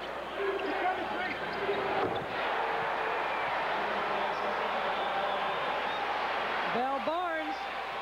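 Steady crowd noise in a basketball arena, with a basketball bouncing on the hardwood court during play.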